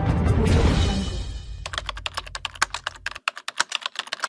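Intro music fading out, then a quick run of computer-keyboard typing clicks, about eight a second: a typing sound effect.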